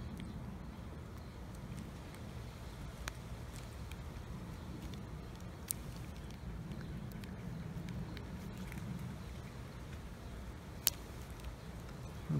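A few small, sharp clicks of flush cutters nipping at the metal cap and plastic separator on the top of a cut-open 18650 lithium-ion cell, three of them spread out, the last the loudest, over a low steady background rumble.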